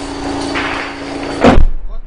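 A single loud boom from tank fire about one and a half seconds in, over a steady low hum.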